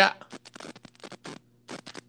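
Irregular scratchy crackles on a microphone line, many short clicks in quick succession, over a faint steady low hum.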